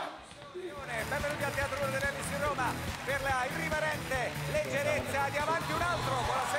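Television game-show audio played back at moderate level: background music with a voice going on over it.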